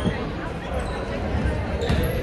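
A basketball bouncing on a hardwood gym floor, a thump just after the start and another near the end, under the echoing chatter of players and spectators in the gym.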